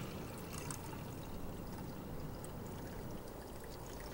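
Faint, steady, low background noise: a quiet lull in a film soundtrack, with no distinct event.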